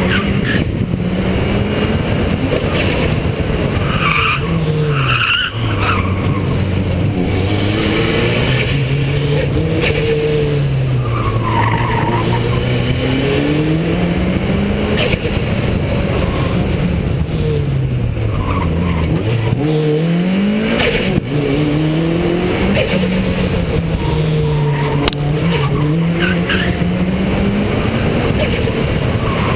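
Toyota Celica GT-Four's turbocharged four-cylinder engine, heard close from the front wing outside the car, revving up and dropping back again and again as the car is driven through the gears; the pitch falls lowest about a third of the way in and again about two-thirds in.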